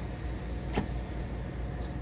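A steady low mechanical hum with one sharp click a little under a second in, as the filled cup is lifted off the bottom-fill dispenser's valve.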